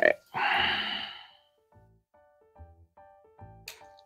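A long breathy sigh about half a second in, fading over a second, then light background music of short, spaced notes.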